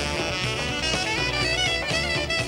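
Saxophone solo in a quick run of bending notes over a swing band's bass and drums.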